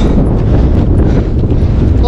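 Strong wind buffeting the camera's microphone: a loud, steady low rumble of wind noise.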